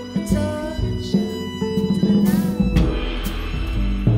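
Instrumental passage of a live band: a bowed violin with gliding notes over electric guitar, double bass and drums, with regular drum hits throughout.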